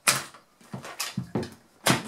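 A PRC-6 radio's case being handled and turned over on a wooden table: a sharp knock at the start, a few light clicks and taps, then another sharp knock near the end.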